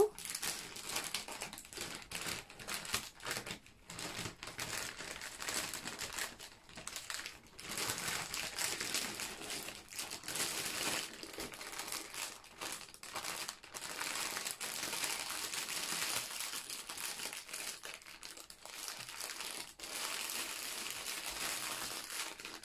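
Plastic bags crinkling and rustling as small zip-lock baggies of diamond-painting drills are pushed into a large clear bag and smoothed flat by hand. The crinkling comes in an uneven run with brief pauses.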